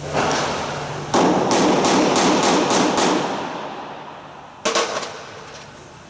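A run of sharp metal strikes, about three a second, on a Torx bit seated in a plug rivet head in the aluminium wing skin, with a ringing that dies away after them. A brief cluster of clicks comes near the end.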